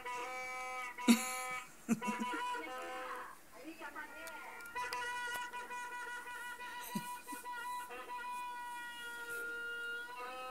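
Plastic toy party horns blown in long, steady, buzzy blasts, heard over a video call. The blasts break off and start again, and the sound sputters briefly a few seconds in. After that comes one long held blast, with a second horn at another pitch joining near the end.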